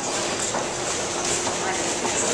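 Steady rumbling din of a busy metro station concourse: a train-like rumble with background crowd voices and footsteps.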